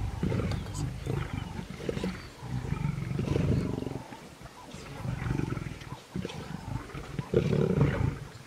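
Lions growling while feeding on a kudu carcass: deep, rough growls in repeated bouts of a second or two, with short pauses between them.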